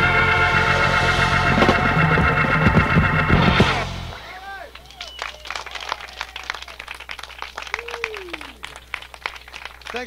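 A live blues-rock band with electric guitar and organ plays the end of a tune, its last chord cutting off about four seconds in. A small studio audience then claps, sparse and polite, with a few calls.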